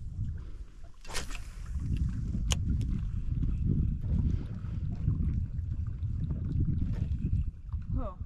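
Wind buffeting the microphone on open water, a low irregular rumble that swells about a second and a half in. Two sharp clicks come near the start.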